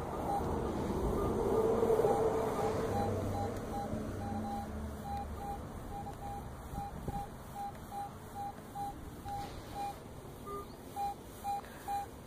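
Garrett AT Pro metal detector giving a string of short, same-pitch beeps, about three a second, as the coil is swept back and forth over a buried target: a solid, repeatable signal that sounds really good, the kind a coin gives. A rush of noise swells and fades under the first few seconds.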